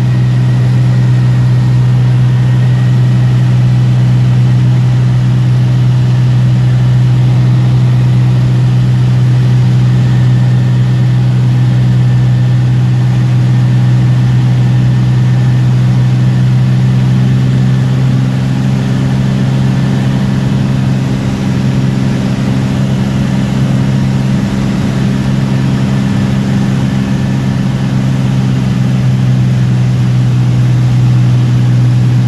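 Light aircraft's piston engine and propeller droning steadily in the cockpit during a landing approach, easing slightly in level and pitch past the middle as power comes back.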